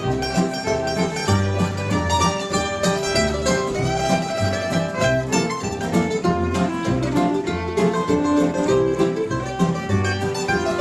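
Live bluegrass band playing an instrumental passage: a mandolin picking the melody over upright bass notes, with other plucked strings strumming along.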